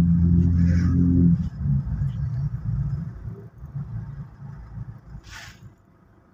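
Toyota Fortuner's engine and road noise heard from inside the cabin: a steady low drone that drops away about a second and a half in as the car eases off behind traffic, then a softer rumble that fades. A brief hiss comes near the end.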